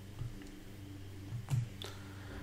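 Low steady hum of room tone with a few short, sharp clicks, the loudest about one and a half seconds in.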